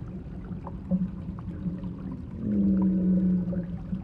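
Water trickling and gurgling along a shallow channel, with small drip-like clicks, over a steady low hum that swells into a sustained droning tone about two and a half seconds in.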